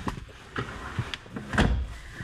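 Light knocks and rustling of someone shifting around in the rear seats of an SUV cabin, with a louder dull thump about one and a half seconds in.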